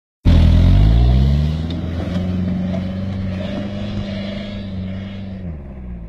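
A 4x4 SUV's engine revving up over the first couple of seconds, held at steady high revs, then easing off near the end. It is loudest at the start.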